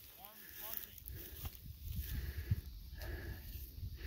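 Low wind rumble on the microphone, with a few faint, quick chirps in the first second.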